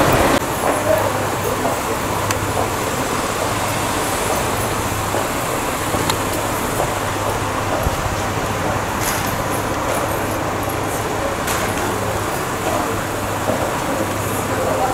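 Steady road traffic noise with a low, even hum underneath.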